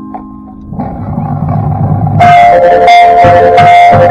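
Marching band music: marimba notes ring out and stop within the first second, a quieter swell builds, and about two seconds in the full ensemble enters loudly with held chords and struck accents. The level overloads the camera microphone, so it sounds a bit piercing.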